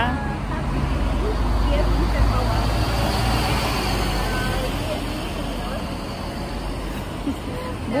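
Road traffic passing a roadside bus stop: a vehicle's engine and tyre noise swells over the first few seconds, is loudest around two to four seconds in, and then eases off.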